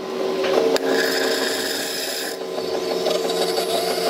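Automatic bean-to-cup coffee machine grinding beans with a loud, steady rasping whirr, then brewing as the coffee starts to run into the cup; the high, gritty part of the noise drops away a little over two seconds in.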